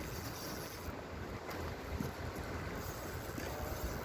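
Steady low rumble of a fishing boat's motor running, with wind noise on the microphone.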